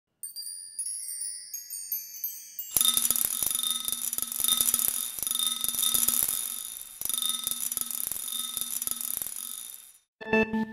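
Sound effects for an animated logo intro. A high tinkling chime runs for the first couple of seconds. Then comes a dense shower of glassy clinks over a ringing tone that swells and drops about every second and a half, fading out just before the end.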